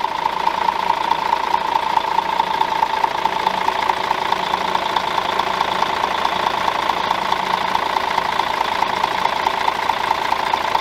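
Rear-mounted diesel engine of a 2010 Setra S416 GT-HD coach idling steadily, heard close up through the open engine bay, with a fast, even pulsing.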